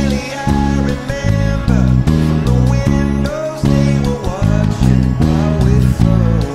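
Fender Jazz Bass played fingerstyle: a line of separate, heavy low notes, some repeated, played along with a rock band recording that carries a sung male lead vocal.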